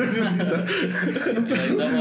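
Men chuckling and laughing together, mixed with bits of speech.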